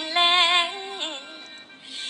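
A woman singing a slow Thai song, holding long notes with a wavering vibrato before the phrase tails off about a second and a half in.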